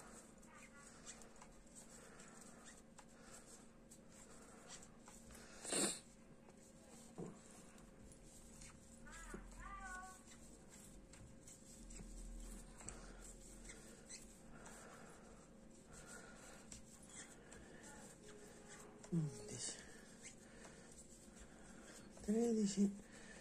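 Near silence: room tone with a faint steady hum, broken by a single sharp click about six seconds in and brief faint murmured sounds around ten seconds and again near the end.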